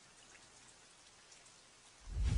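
Near silence: a faint, even hiss with a few tiny ticks.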